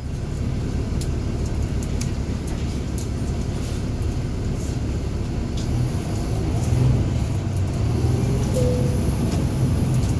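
Inside a NABI 40-SFW transit bus, its Caterpillar C13 diesel engine rumbles steadily. From about six seconds in it gets louder with a faint rising whine as the bus pulls forward, over scattered sharp interior rattles.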